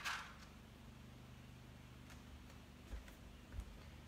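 Quiet handling of small objects: a couple of soft, low knocks and a few faint ticks over a steady low hum.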